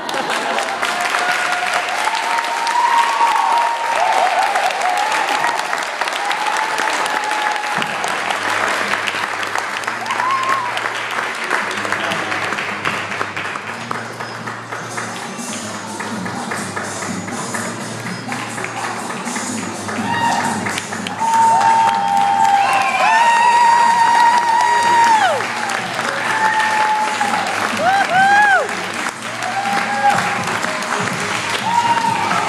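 Audience applauding, with voices calling out and whooping over the clapping; the calls grow louder in the last third.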